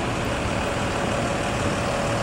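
Mercedes-Benz coach's diesel engine idling, a steady even sound with a faint constant hum.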